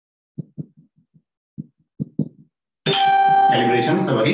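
Marker pen on a whiteboard making a run of short quick ticks as it draws the scale divisions of a ruler. Near the end a man's voice holds one long steady tone, then goes into speech.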